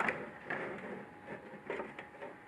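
Wanhao Duplicator i3 controller box being handled as its case is pulled apart by hand: faint rubbing and light clicks. There is a sharper click at the start and a couple of light knocks near the end.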